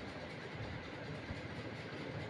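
Faint, steady low background noise with no distinct sound in it: room tone.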